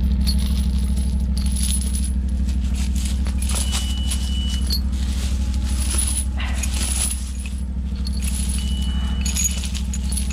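Ventrac 4500P tractor engine idling steadily. Its short high beep comes about every five seconds, a warning that the engine rpm is too low. Steel chain links clink and rattle as the chain is wrapped around the stems.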